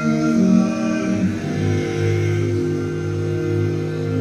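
Barbershop quartet singing a cappella in four-part harmony, men's voices moving through a chord change and settling, about a second and a half in, onto a long held chord.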